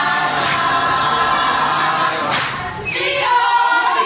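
Many voices singing together unaccompanied, a group song in parts, with a short burst of noise a little past two seconds in.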